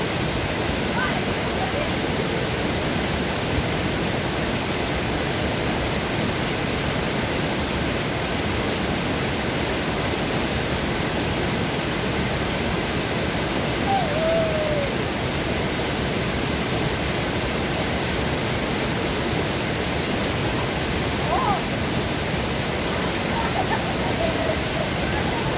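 Small waterfall pouring over a stone weir and rocks into a pool, a steady unbroken rush of falling water.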